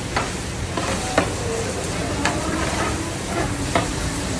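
A long-handled ladle stirring chicken pieces frying in a large wide pan over a wood fire, with a steady sizzle. The ladle knocks against the pan four times, about once a second.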